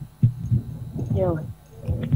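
A person's voice speaking softly, quieter than the talk around it, with a pause near the end and a low hum underneath.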